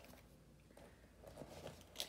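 Near silence: room tone, with a couple of faint soft sounds of pens being handled on a sketchbook page in the second half.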